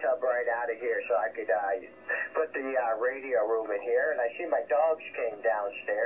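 A man talking over HF single-sideband radio, heard through a Codan NGT transceiver on the 20-metre band. The voice is thin and narrow, with no deep bass and no highs.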